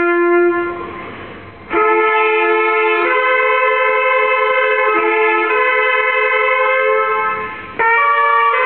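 Trumpets and a saxophone playing slow, sustained chords together. The first chord fades out about half a second in, leaving a pause of about a second. A new chord then begins, its notes changing every second or two, with another short break near the end.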